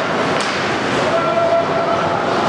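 Ice hockey rink ambience during play: a steady din of skates and crowd noise, a sharp stick or puck click near the start, and a steady held tone starting about halfway through.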